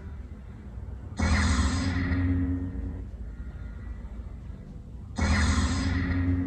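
Star Wars lightsaber sound effect: a sudden ignition burst about a second in that settles into a low hum, then a second burst about four seconds later.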